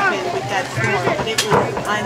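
Spectators' voices talking in the background, with no single voice clear, and one sharp click or knock about one and a half seconds in.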